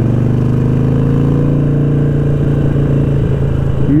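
Harley-Davidson Sportster XL1200's air-cooled V-twin through an aftermarket Vance & Hines exhaust, loud and running at a steady cruising pitch while the bike rides along.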